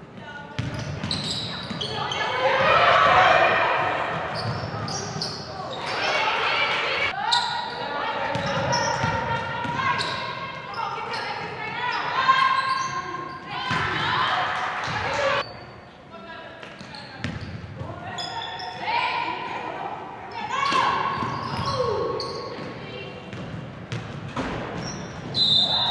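Live gym sound of a girls' basketball game: a basketball bouncing on the hardwood floor, with indistinct shouting voices from players and coaches echoing in a large gym.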